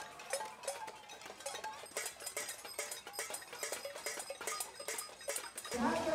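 Pots and pans being banged by hand in a crowd, a dense, irregular clatter of metal clanks with a high ringing over them. A voice comes in near the end.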